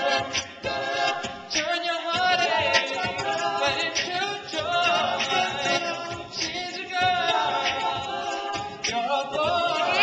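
All-male a cappella group singing live through microphones, several voices in harmony with short percussive vocal beats mixed in. Near the end a single high voice sweeps up and back down.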